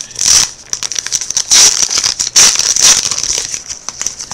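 Trading-card pack wrapper crinkling as it is torn open and handled, in several loud bursts of rustling.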